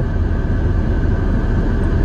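Steady low rumble and hiss inside a parked minivan's cabin, with the engine idling and the ventilation fan running.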